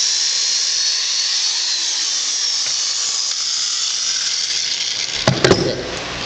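Electric drill boring through a plastic PVC pipe cap: a steady high-pitched whine whose pitch sags slightly as the bit cuts. A few sharp clicks come about five seconds in.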